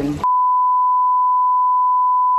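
Television colour-bar test tone: one steady, pure beep at a single pitch, switched on abruptly just after a voice cuts off about a quarter second in.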